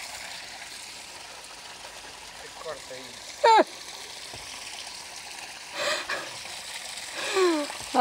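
Steady trickle of water from a small garden water feature. A brief loud voice breaks in about three and a half seconds in, and fainter voice sounds come near the end.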